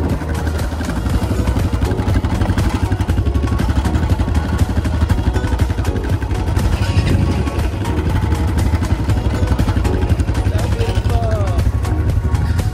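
ATV engines running with a steady low rumble, with people's voices over them.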